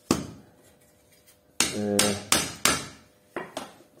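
Sharp metallic knocks on a car alternator's aluminium casing while it is worked apart: one knock, then a quick run of four about a second and a half in, some ringing briefly, and two lighter knocks near the end.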